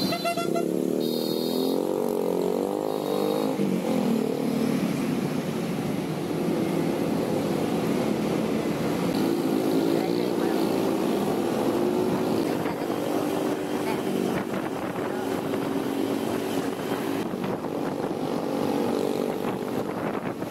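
Honda ADV 160 scooter's single-cylinder engine running under way in traffic, its pitch rising and falling as the throttle changes, with road noise.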